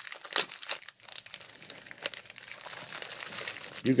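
Packaging wrapper crinkled and crumpled by hands as a package is unwrapped, in faint, irregular crackles.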